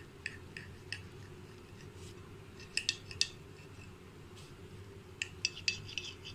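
Table knife cutting through an omelette on a glass plate, the blade clicking and scraping against the glass in short strokes: a few single clicks, then a cluster about three seconds in and another near the end. A faint low steady hum runs underneath.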